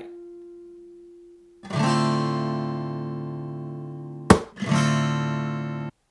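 Acoustic guitar with a capo at the fifth fret, strumming an A minor 7 chord shape from the fifth string twice: the first strum comes in under two seconds in and rings out, and the second, with a sharp attack, comes about four seconds in and fades. The sound cuts off suddenly just before the end.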